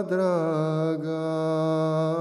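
A male singer holding one long drawn-out sung note in a sevdah song, dropping to a lower pitch at the start and then sustaining it.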